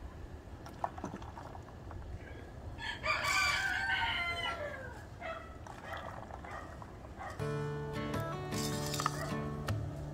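A rooster crows once, about three seconds in, the call sliding down in pitch at its end. Background music starts about two-thirds of the way through.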